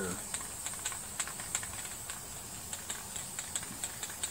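Aerosol spray paint can in use: irregular light clicks and ticks, several a second, over a faint steady hiss.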